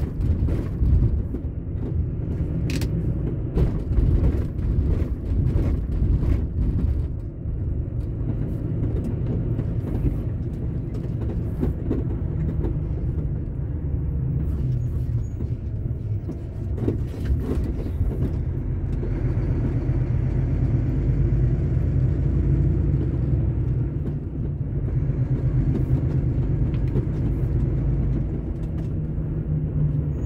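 Diesel truck running at road speed, heard from inside the cab: a steady low engine and road rumble, with a run of knocks and rattles over the rough road surface in the first several seconds.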